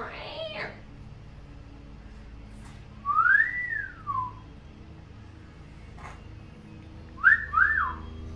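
A woman whistling: one long whistle about three seconds in that rises, holds and falls, then two quick rising-and-falling whistles near the end.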